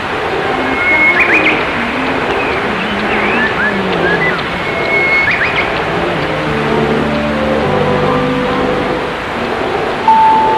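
Radio station's hourly time-signal music, received on AM through heavy static and hiss; the held musical tones stand out from about six seconds in.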